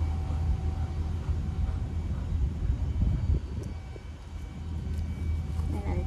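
Steady low rumble with a faint steady hum above it, dipping briefly about four seconds in.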